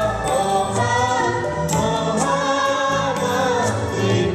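A group of men and women singing a song together in chorus, with live band accompaniment on keyboard and guitar and a few sharp percussion strokes.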